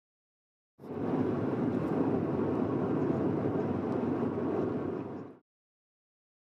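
Steady road and engine noise heard inside a moving car at highway speed, an even noise with no distinct tones. It starts abruptly about a second in and cuts off abruptly near the end, with dead silence on either side.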